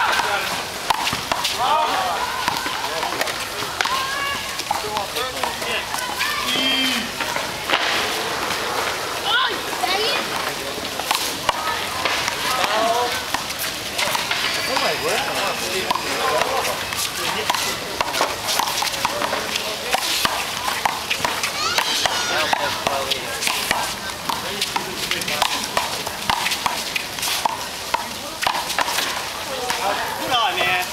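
One-wall handball rally: irregular sharp smacks of the small rubber ball struck by gloved hands and hitting the concrete wall, with players' voices calling out.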